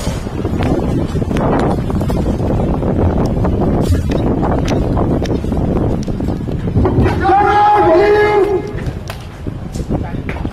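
Wind rumbling on the microphone, then about seven seconds in a long, drawn-out shouted parade command, one held call lasting over a second.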